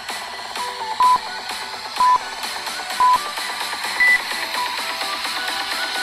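Electronic dance music with a steady beat, over an interval timer's countdown beeps. Three short beeps come a second apart, then a single higher-pitched beep about four seconds in that marks the end of the work interval.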